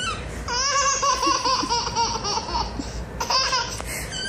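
A baby laughing: a long, high-pitched run of rapid giggles, then a shorter burst near the end.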